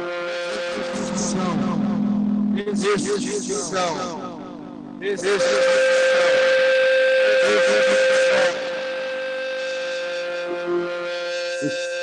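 Experimental electronic sound collage: a steady droning tone under layered sustained tones, with wavering, gliding pitches a couple of seconds in. A louder, dense wash of sound sets in about five seconds in and cuts off suddenly near eight and a half seconds.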